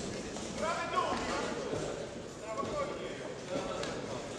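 Voices shouting in a large sports hall during an amateur boxing bout, with a few dull thuds from the boxers' feet and gloves in the ring.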